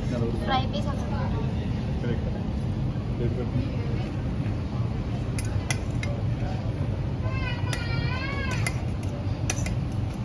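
Steady low restaurant rumble with background voices, and a few sharp metal clinks as rice is served from a steel bowl onto a plate. A high, wavering voice rises and falls for about a second and a half near the end.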